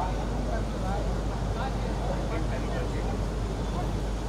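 Indistinct chatter of many voices at a busy event, over a steady low rumble.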